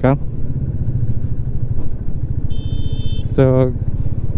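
A motorcycle engine running steadily at low road speed, heard from the rider's seat. A brief high-pitched tone sounds about two and a half seconds in.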